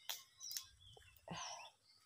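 Faint bird chirps, a few short high calls that fall in pitch, with a soft brief rustle a little after the middle.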